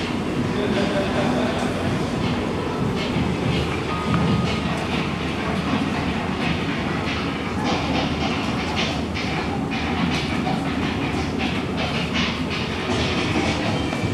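Sound of an electric train running on rails, played over speakers in a museum theater show: a steady rumble with irregular clicks from the track.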